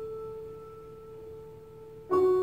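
Soft piano music: one held chord slowly dying away.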